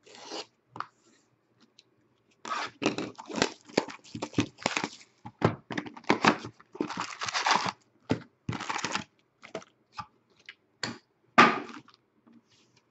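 Plastic shrink wrap being cut and torn off a sealed trading-card box: a run of irregular ripping and crinkling strokes, then scattered clicks, and one last loud rip near the end.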